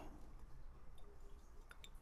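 Faint room tone with a few soft clicks and ticks from a bottle of Peychaud's bitters being dashed over a mixing glass of ice.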